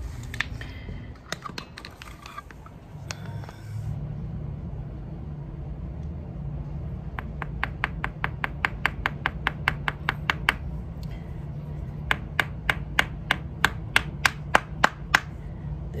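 Sun-dried clay mud ball knocked against ceramic floor tile: a quick run of sharp taps, about five a second, for about three seconds, then after a short pause a louder, slower run of about three taps a second. The hard, clicking knocks are the sign of the ball having dried almost as hard as a rock.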